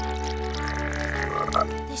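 Cartoon frog croaking sound effects over soft, sustained background music.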